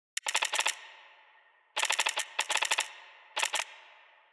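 Computer-terminal typing sound effect: four quick runs of sharp clicks, each trailing off in a short fading ring, as on-screen text is typed out letter by letter.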